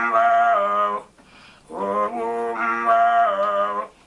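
Xhosa woman's throat singing (umngqokolo) in a kargyraa-like style. Two long held notes sit on a steady low drone with bright overtones shifting above it, broken by a short breath about a second in.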